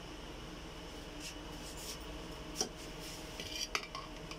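A metal spoon clinking and scraping against a ceramic plate of rice, with two sharp clicks, one past the middle and one near the end, over a steady background hum.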